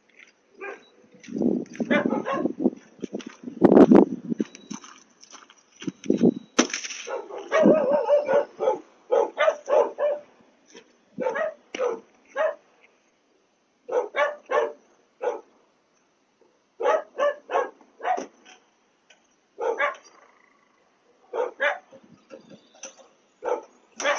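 A dog barking over and over in short runs of several barks, heard through a security camera's microphone.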